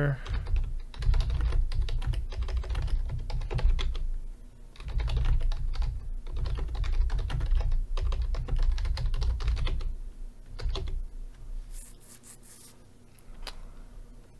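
Typing on a computer keyboard: runs of quick key clicks with a short pause about four seconds in, thinning to a few scattered clicks after about ten seconds.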